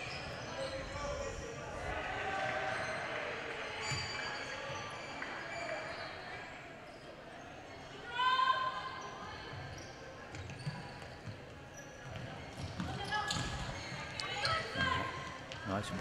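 Futsal ball being kicked and bouncing on a hardwood court, with short knocks scattered through. Players' shouted calls come over it, one clear call about eight seconds in and several more near the end.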